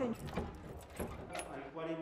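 Keys jingling and a metal padlock being handled at a door, with a few light clicks.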